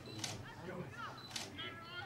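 Distant voices calling out across a football ground, with two sharp clicks, one about a quarter second in and one about a second and a half in.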